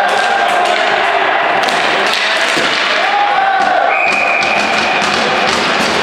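Ball hockey play echoing in an arena: sticks and ball knocking on the floor and boards, with repeated sharp thumps over a steady din of voices.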